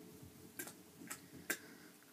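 Three faint, sharp percussive clicks about half a second apart, each louder than the last, as a performer starts tapping out a beat to loop.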